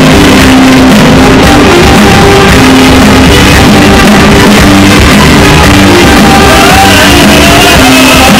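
Loud live band music from keyboards and guitars, with shouting over it.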